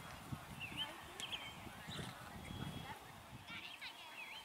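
Faint, distant voices chattering with no clear words.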